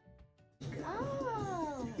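A person's high-pitched, drawn-out vocal exclamation that falls steadily in pitch for over a second, starting about half a second in, over faint background music.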